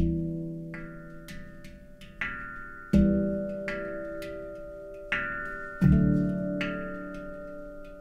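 Two handpans played together in a slow, sparse pattern. Deep low notes are struck about every three seconds, with higher notes between them, and each note rings on and slowly dies away.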